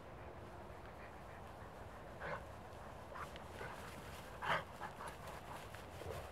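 Great Pyrenees dogs making short vocal sounds as they play together: a few brief separate sounds, the loudest about four and a half seconds in, then a quick cluster of smaller ones.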